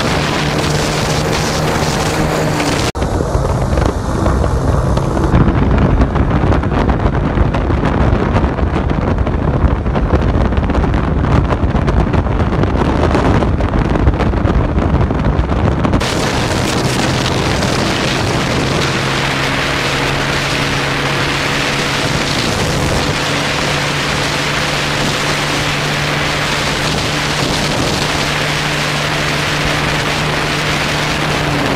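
Single-cylinder 150cc motorcycle engine running steadily at the start, then the bike pulls away about three seconds in and heavy wind buffeting on the camera microphone drowns the engine as it accelerates. About halfway through the sound changes suddenly to a steady engine hum at cruising speed with lighter wind.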